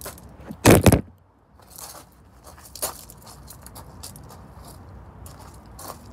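Handling noise from a phone being moved about: a loud rubbing scrape on the microphone a little under a second in, then quieter scattered rustles and clicks.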